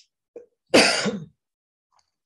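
A woman clears her throat once, a short rough burst lasting about half a second.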